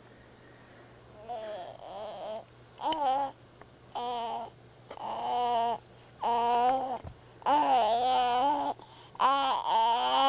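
A six-month-old baby babbling: a string of about seven drawn-out vowel sounds, some wavering in pitch, starting about a second in.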